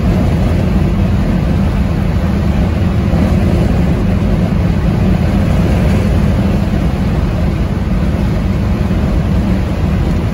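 Steady low rumble of wind, tyre and engine noise heard from inside a 1973 Ford Mustang convertible cruising at highway speed.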